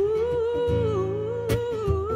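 A female soul singer's wordless vocal line, held and bending up and down in pitch, with a band playing softly beneath. A sharp hit comes about one and a half seconds in.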